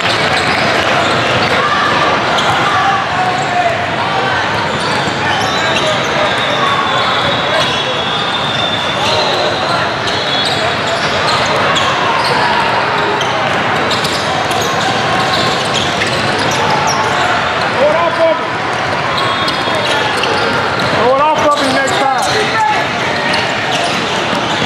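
Basketballs bouncing on a hardwood court and occasional short sneaker squeaks under a steady din of many voices in a large, crowded hall.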